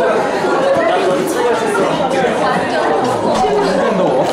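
Several people talking at once in a room, a steady hubbub of overlapping voices with no single clear speaker.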